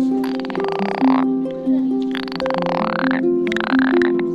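A frog calling three times, each call a rapid pulsed rattle: two about a second long and a shorter one near the end. Background music of slow plucked harp notes plays under it.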